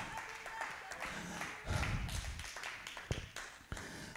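Quiet lull with faint room sound and a few sharp taps, the clearest two a little past three seconds in.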